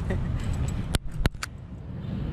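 A man's short laugh over a low rumble, then three sharp clicks about a second in, the middle one the loudest.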